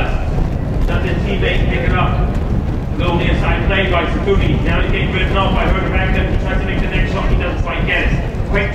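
A man's voice talking, likely match commentary, over a steady low rumble.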